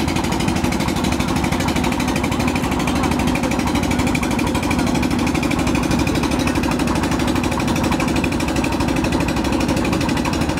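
Motorized wooden river boat's engine running steadily, a continuous fast, even chugging with no change in speed.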